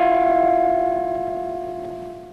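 The final held note of a jazzy cartoon theme tune: one steady sustained tone that fades away over about two seconds.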